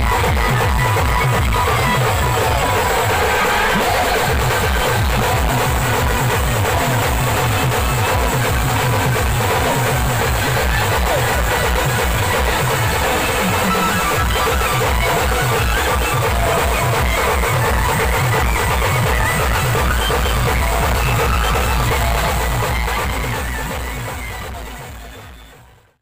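Adivasi band music played loud: a steady, fast beat on bass drums and side drums with a melody over it, fading out over the last few seconds.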